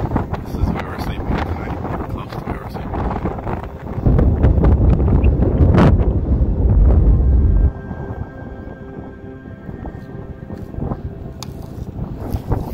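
Wind buffeting the microphone: a loud low rumble that starts suddenly about four seconds in and cuts off a few seconds later, over fainter mixed outdoor sound.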